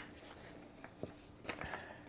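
Faint handling of folded paperwork: soft rustles and a few light ticks as papers are drawn out of a fabric case pocket and handled, with more small clicks near the end.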